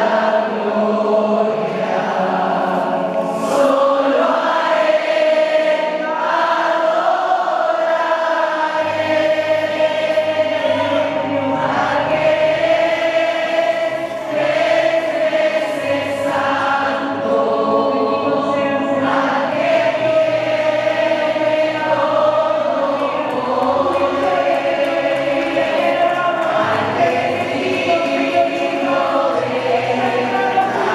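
A choir singing a slow hymn in sustained notes, with a low bass line joining about nine seconds in.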